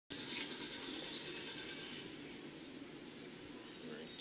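Faint, steady outdoor background noise: an even hiss with no distinct events.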